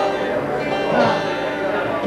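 Acoustic guitar strummed and picked between songs, with a voice talking over it.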